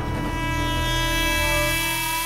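Background score music: a steady, sustained chord held over a deep low drone.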